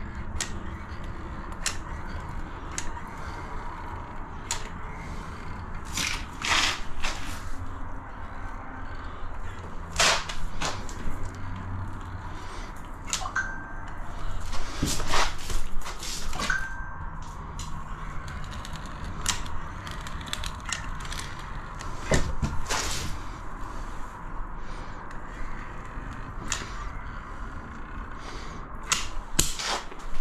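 Hand-squeezed barrel-type caulking gun laying a bead of bond breaker silicone: irregular clicks and knocks from the trigger and plunger over a low steady hum, with two brief high tones about halfway through.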